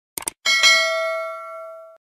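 Subscribe-button sound effect: two quick clicks, then a single bell ding that rings on and fades away over about a second and a half.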